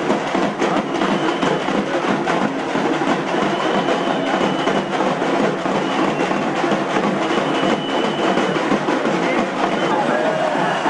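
Din of a packed festival street crowd: drums beating and many voices at once, with a high steady tone sounding on and off several times.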